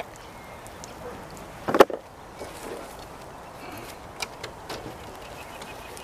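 One sharp knock about two seconds in, then two fainter clicks, from handling a metal-framed chair just dragged out of the lake. Quiet outdoor background throughout.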